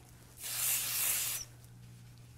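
One spray from an aerosol can of dry shampoo onto the hair at the crown of the head: a hiss starting about half a second in and lasting about a second, then cutting off.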